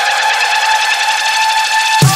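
Electronic dance track in a breakdown: a synthesizer note that has glided upward now holds steady over a hiss, with no bass or drums.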